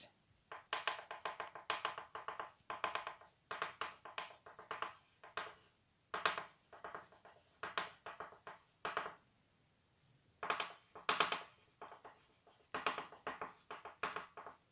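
Oil pastel scribbling over paper in small circular strokes: repeated short bursts of squeaky scratching, with brief pauses between them and a longer pause about ten seconds in.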